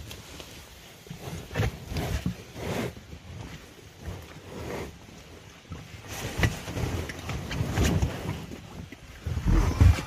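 Oars paddling an inflatable life raft through still water: irregular splashes and knocks every second or two.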